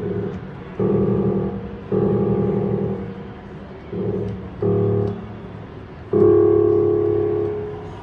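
Upright piano with its front panel removed, sounded by pushing its action parts directly with a finger: six notes struck one after another, each ringing and dying away, the last held longest.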